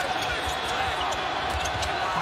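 Live court sound of a basketball game in play: a steady background of arena noise, with a few low thuds of the ball and players on the hardwood floor.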